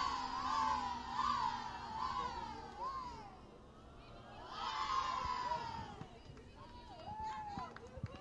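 High-pitched shouted chanting from softball players, in long sing-song calls that rise and fall: one stretch of about three seconds, a brief lull, then two shorter calls.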